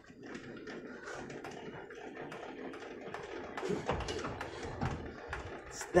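Trailer jockey wheel being wound by hand, a steady run of light metal clicks, as the Cruisemaster D035 off-road coupling is raised off the tow hitch. A couple of louder knocks come about four and five seconds in.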